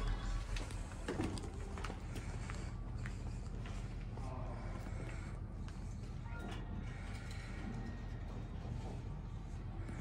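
Faint background music and steady room noise, with a few light footsteps and knocks. Near the end an elevator's doors slide shut.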